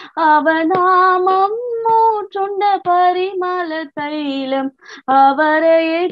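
A woman singing a Tamil Christian song solo and unaccompanied, in held notes with vibrato, her phrases broken by short breaths and a longer pause about five seconds in. Heard over a video call.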